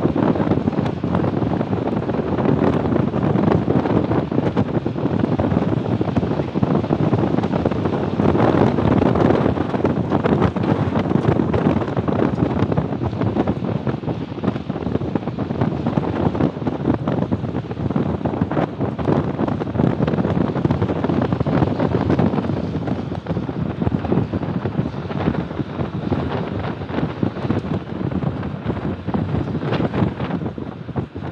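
Steady wind rushing and buffeting the microphone aboard a moving motorboat, with the boat's running noise mixed in beneath.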